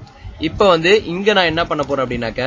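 A man speaking, narrating the lesson.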